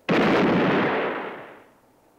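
A single revolver shot with a long echoing tail that fades away over about a second and a half.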